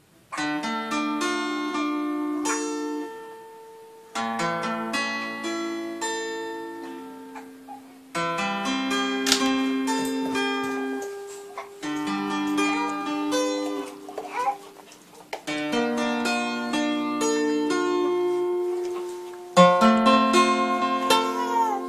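Acoustic guitar played slowly: a chord struck about every four seconds and left to ring down, with further notes picked over it as it fades.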